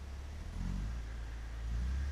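Holden VL Commodore Walkinshaw's 5.0-litre V8 running with a deep low rumble, which swells about half a second in and again near the end as the revs rise.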